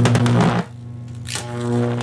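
Cartoon electrocution sound effect: a loud, steady electric buzz with crackling zaps. It drops in level about half a second in, then swells again with a sharp zap near the end.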